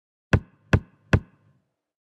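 Three sharp percussive hits, evenly spaced a little under half a second apart, each with a short ring: a logo sting sound effect.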